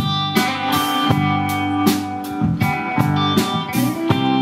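Live blues band playing between sung lines: electric guitar notes ringing over bass guitar and a steady drum beat with cymbal hits.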